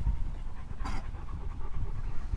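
German Shepherd panting close by, with one louder breath about a second in.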